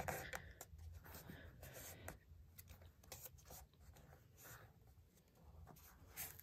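Faint rustling and rubbing of origami paper as fingers press and crease a fold flat on a cardboard board, with scattered soft ticks of paper handling.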